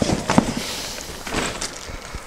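The aluminium frame of a Bumbleride Indie Twin double stroller being unfolded: a few clicks and knocks from the frame joints as it swings open, with rustling of the fabric in between.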